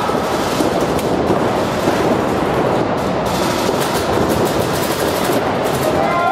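Several paintball markers firing rapid strings of shots at once, a dense crackle of shots that thickens about halfway through.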